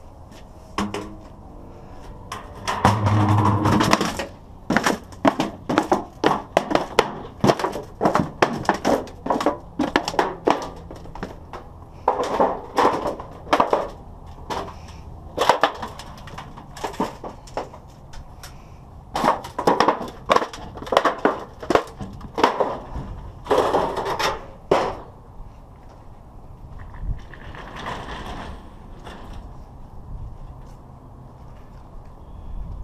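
Thin galvanized sheet-metal duct pipe being handled and stepped flat: a rapid series of sharp metallic crunches and clanks in clusters, with short pauses between them.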